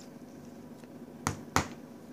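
Two sharp plastic clicks, about a third of a second apart, from a small Play-Doh tub and its snap-on lid being handled.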